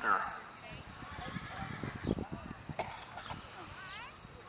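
Hoofbeats of a horse walking on the dirt of an arena, with people talking in the background.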